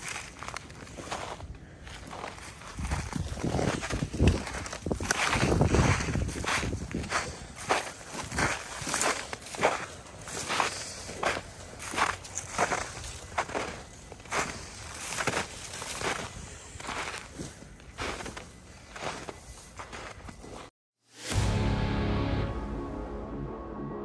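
Footsteps on snowy ground at a steady walking pace. Near the end they cut off, and after a moment of silence music starts.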